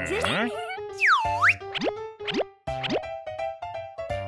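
Cartoon soundtrack music with comic pitch-glide sound effects: a glide that dips and rises again about a second in, then a few quick upward slides, over held notes.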